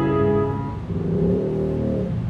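Grand piano being played: a chord struck just before rings on and slowly fades, then a line of lower notes moves underneath in the second half.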